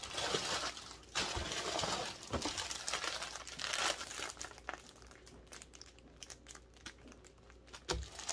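Clear plastic bags of yarn crinkling and rustling as they are handled and lifted out of a cardboard box. The crinkling is busiest for the first four seconds or so, then thins to a few faint crackles.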